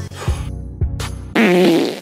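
A loud, wavering fart sound starting about one and a half seconds in, over soft background music.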